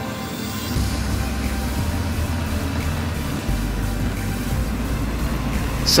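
Background music fading out in the first second, giving way to a low, steady rumble that grows stronger about halfway through.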